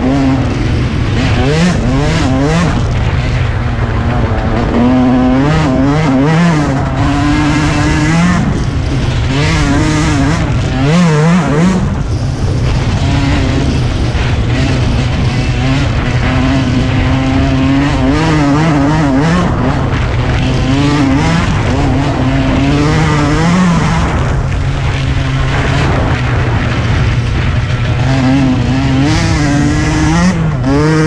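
Yamaha YZ125 two-stroke single-cylinder dirt bike engine being ridden hard, its pitch rising and falling continually as the throttle opens and closes. There is a short drop in revs about eleven seconds in.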